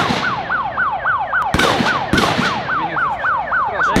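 Electronic siren sounding in a fast repeating falling sweep, about three sweeps a second, with a few sharp cracks over it.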